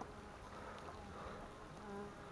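Faint buzz of a flying insect, a steady low hum that grows a little louder near the end.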